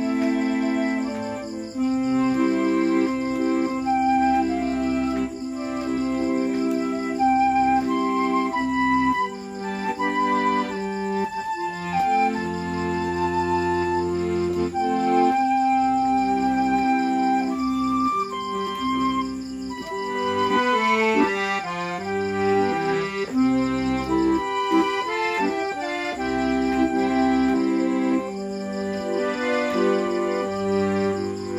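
A Pearl River piano accordion and a bamboo transverse flute play a tune together. Held accordion chords and bass lie under the melody, with a stretch of quick, short notes about two-thirds of the way through.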